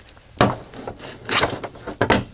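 A hand wearing rings moving over tarot cards on a table: three short rustling clinks, about half a second in, around a second and a half in, and at the very end.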